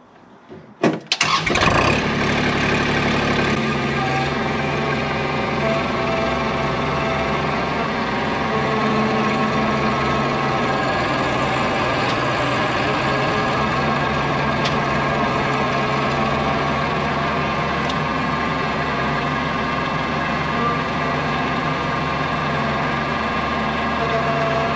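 Kubota L2502 compact tractor's three-cylinder diesel engine starting, catching about a second in, then running steadily.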